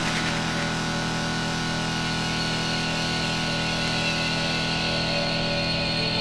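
Techno breakdown: a dense, sustained synth drone of many steady tones, with no kick drum.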